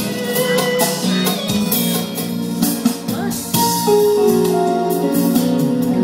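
Electronic keyboard playing an instrumental passage, with long held notes over a steady beat.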